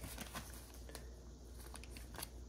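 Faint crinkling of a small clear plastic zip bag being handled and pinched open, a few light scattered crackles.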